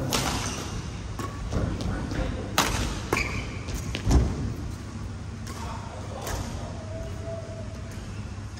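Badminton rally: a shuttlecock hit sharply by rackets about five times, the hits echoing in a large hall. A thump about four seconds in is the loudest sound.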